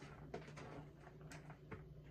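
Faint clicks and soft taps of sliced vegetables being pushed by hand into a glass jar, a few scattered knocks over a low steady hum.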